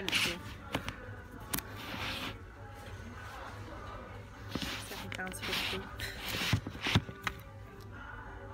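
Rustling and a few sharp clicks from a roll of lace trim being handled on a shop shelf close to the phone's microphone, over faint background music and voices.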